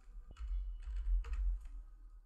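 Computer keyboard typing: a quick run of about a dozen keystrokes as a password is typed in.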